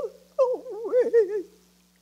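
A woman's solo voice singing a spiritual with a wide, slow vibrato: a short, wailing phrase that begins about half a second in, wavers and slides downward in pitch, and breaks off about a second and a half in.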